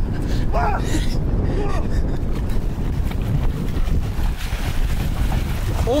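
Wind buffeting the microphone, a loud steady rumble, with faint voices. Water splashing near the end as a man runs into a lake.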